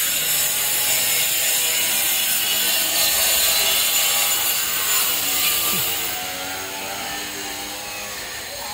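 Steady rasping noise of tool work on a building site, dropping somewhat in loudness about six seconds in.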